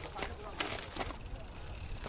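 Mountain bike rattling and knocking over tree roots and rocks as it is ridden slowly up a technical section, with a few sharp clicks, under a low rumble.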